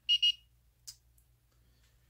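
Handheld infrared thermometer beeping twice in quick succession, short high electronic beeps as it takes a temperature reading, followed by a light click just under a second later.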